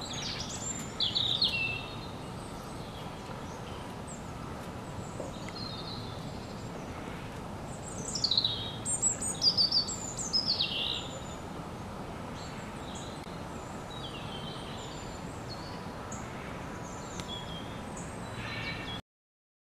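A small songbird singing outdoors: quick runs of high chirps that fall in pitch, loudest about a second in and again in a longer phrase from about eight to eleven seconds, over steady outdoor background noise.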